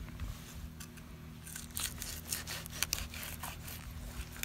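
Fillet knife cutting through a rock bass's tough scales and skin behind the gill, a run of short crackling scratches starting about a second and a half in.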